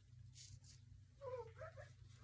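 Near silence over a low steady hum, with a faint brush of a cloth being wiped across a plastic cutting mat. About a second and a half in there is a short, faint, wavering pitched sound.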